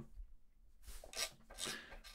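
Rotary encoder of an Empress Zoia being turned quickly, a faint run of detent clicks with light rubbing in a few short bursts between about one and two seconds in. Its contacts have just been cleaned with contact spray, and it clicks with a little more resistance.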